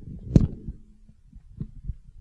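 Microphone handling noise as a stage microphone is lifted from its stand: one sharp loud knock near the start, then low rubbing rumble and a few softer thuds.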